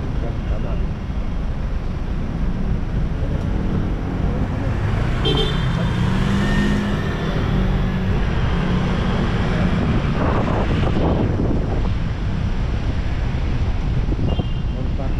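Road traffic noise of cars and motorcycles, with a steady low rumble of wind on the microphone as the camera moves along the road.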